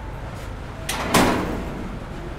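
A light knock, then a moment later a louder bang that dies away over about half a second, over a steady low background rumble.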